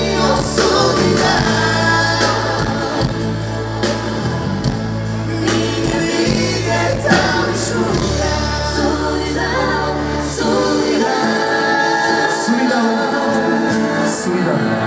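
A live band plays a pop song with a male lead vocal. The bass drops out about eleven seconds in.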